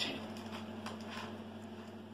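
Faint, irregular scrapes and light clicks of a metal spoon against a mixing bowl and baking tin as thick cake batter is spooned across, over a steady low hum.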